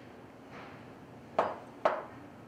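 Two sharp metallic clinks about half a second apart in the second half, each with a brief ring: cast, zinc-plated offset conduit nipples knocking together as one is set down among the others.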